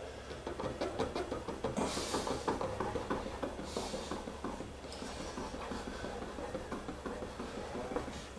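Wire cake leveler being sawn through the top of a baked pumpkin sponge cake: faint scratching and crackling of the wire through crust and crumb, with two louder rasping strokes about two and four seconds in.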